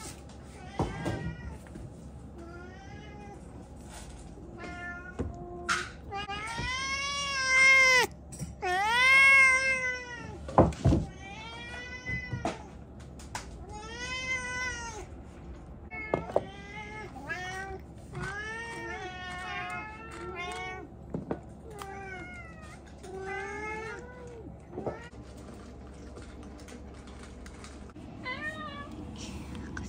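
Domestic cats meowing over and over, a long run of drawn-out meows that rise and fall in pitch, about a second or two apart, the loudest and longest about seven to ten seconds in; the cats are begging for food. A sharp knock comes about eleven seconds in.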